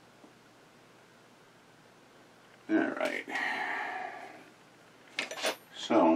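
Low room tone, then a short stretch of a voice a little before the midpoint. Near the end come a few sharp clicks and clatters of metal hand tools being picked up from the workbench.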